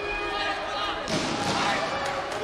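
Voices shouting and calling across a large sports hall, mixed with the thumps of the fighters' feet and kicks on the taekwondo mat during an exchange.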